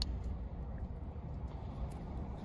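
Quiet background inside a parked car: a low, steady hum with faint hiss and a single brief click at the very start, and no distinct event.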